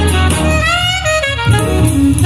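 Jazz with saxophone and a strong bass line playing through a JBL Horizon 2 DAB Bluetooth clock radio speaker as a sound test. A saxophone phrase glides upward about half a second in.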